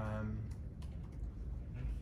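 Laptop keyboard being typed on: a few light, irregular key clicks.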